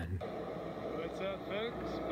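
Road traffic and car noise, a steady low rush, with a faint voice talking underneath.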